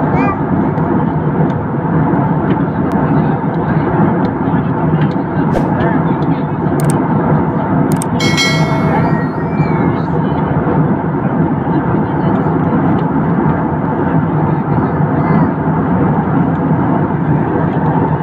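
Steady cabin noise of an Airbus A320-family jetliner in cruise, the constant rush of airflow and jet engines heard from inside the cabin. About eight seconds in, a brief pitched sound lasting about a second rises above it.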